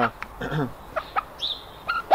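A few short, soft chicken clucks, with a brief high peep about one and a half seconds in.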